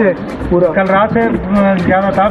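A person speaking in a steady run of talk.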